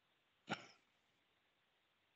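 A person clearing their throat once, short and sharp, about half a second in; otherwise near silence.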